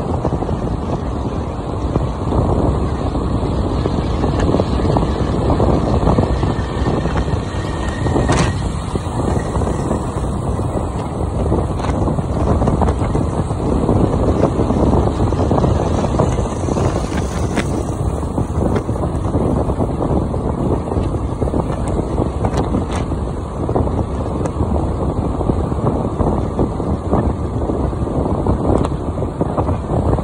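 Wind rushing over the microphone of a moving motor scooter, a steady low buffeting with the ride's road and engine noise mixed in underneath.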